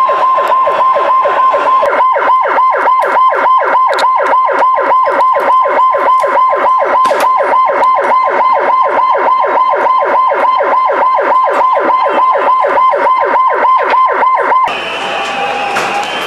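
Emergency siren in a fast yelp, its pitch sweeping up and down about four times a second, loud and unbroken until it cuts off abruptly near the end.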